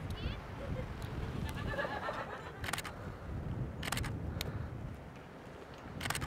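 A few sharp camera shutter clicks, about two to four seconds in, over a low outdoor rumble of wind, with faint distant voices.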